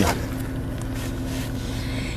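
Steady low rumble of a car's cabin while driving, with a faint steady hum running under it.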